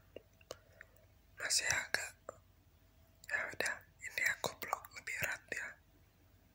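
A man whispering close to the microphone in three short breathy phrases, with a few small clicks in the first couple of seconds.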